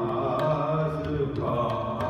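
Sikh shabad kirtan in Raag Yaman: harmoniums holding sustained notes under a slow sung line, with a few sparse tabla strokes.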